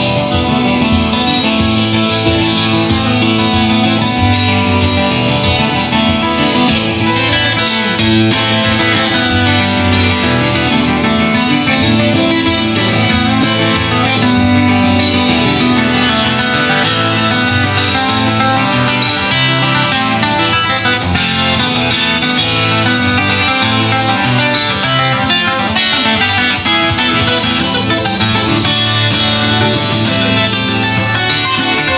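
Solo twelve-string acoustic-electric guitar, picked, playing a continuous instrumental tune with bass notes and melody together.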